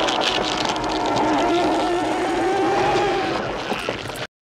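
Horror film creature sound effects: a loud, crackling noise with a wavering, drawn-out tone running through it, the tone fading near the end.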